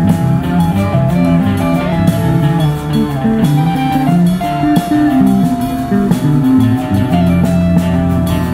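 Rock band playing live: electric guitar riffing over a drum kit.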